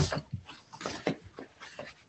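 A dog making a series of short sounds, about five in two seconds, picked up over a remote-meeting microphone.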